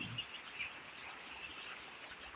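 Faint peeping of a flock of eight-day-old chicks, with a few short chirps standing out in the first half second.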